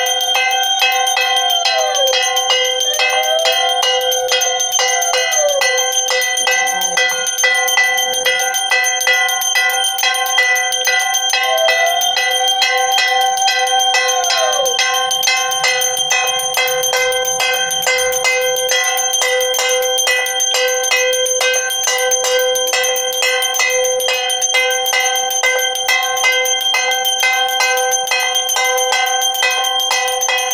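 Puja bells rung rapidly and without pause during an aarti, a dense, steady clangour of ringing metal tones. A few rising-and-falling gliding tones sound over the ringing in the first half.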